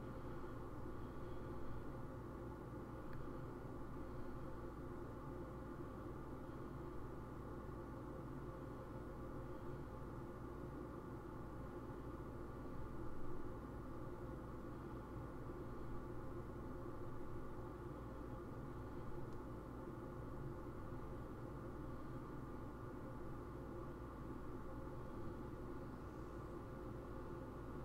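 Faint steady low hum with no distinct events.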